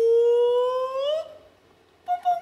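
A man's long drawn-out stage call, one held vowel that rises at the end and breaks off a little over a second in.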